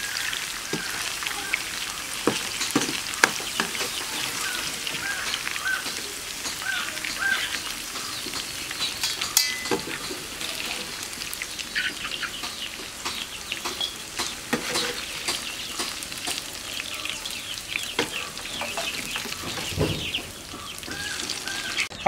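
Masala-coated cauliflower deep-frying in hot oil in a wok: a steady sizzle, with occasional clinks and scrapes of a metal slotted spoon and a perforated steel strainer against the pan.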